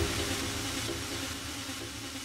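Electronic dance music breakdown: the kick drum has dropped out, leaving a white-noise wash over faint held low synth tones that fades steadily, a transition effect in a DJ mix.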